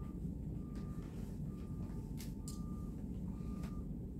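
A vehicle's reversing alarm beeping at one steady pitch, about once a second, over a low engine rumble, with a few faint clicks about halfway through.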